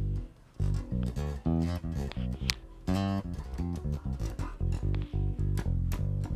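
Waterstone five-string electric bass played fingerstyle, unaccompanied: a held low note dies away, then a quick line of short plucked notes follows, about three or four a second.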